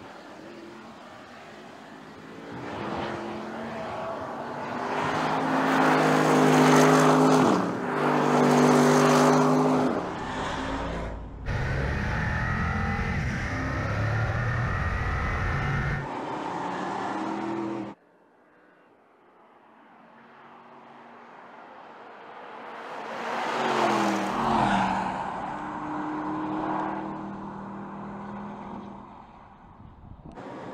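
Porsche Panamera GTS V8 driven hard on a race track: the engine note swells loud as the car passes, with a short break in the note, then a steadier stretch of engine, road and tyre noise. After a sudden drop to quiet, it builds to another pass-by near the end, its pitch falling as the car goes by.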